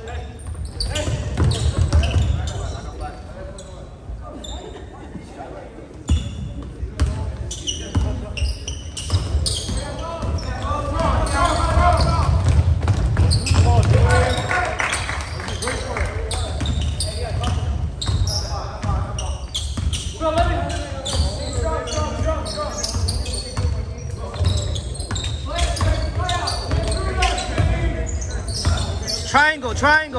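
Basketball bouncing on a hardwood gym floor during play, with voices of players and spectators, all echoing in a large gymnasium.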